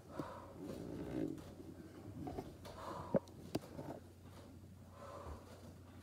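A woman breathing hard through her exertion, with short irregular exhaled puffs. Two sharp clicks come a little over three seconds in.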